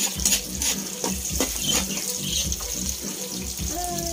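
Chopped onion and garlic sizzling in hot oil in a steel wok, with irregular clicks and scrapes of a metal ladle stirring against the pan.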